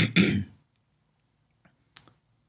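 A man clearing his throat in a short broken burst at the start, followed by a faint mouth click near the end.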